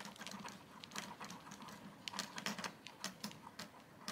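Faint, irregular small clicks and ticks, several a second, from a small screwdriver tool turning a pointed screw through nylon collar webbing into a plastic AirTag holder.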